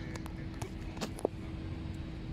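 Outdoor background noise: a steady low rumble with a faint steady hum, broken by a few short sharp clicks, the loudest about a second and a quarter in.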